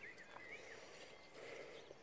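Near silence, with a few faint, short, high chirps from birds in the first second.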